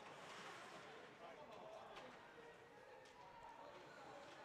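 Near silence from an ice rink during play: faint distant voices and a few light clicks, like sticks on the puck.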